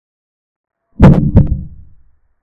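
Chess program's piece-move sound effect for a capture: two quick wooden clacks about a third of a second apart, fading fast.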